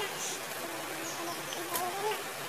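Insect-like buzzing that wavers in pitch, coming in short spells about every half second over a steady hiss.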